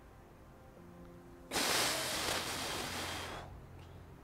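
A man letting out one long breath through the mouth, about two seconds long, starting about a second and a half in and fading away. It is the release of the held recovery breath after a round of Wim Hof breathing.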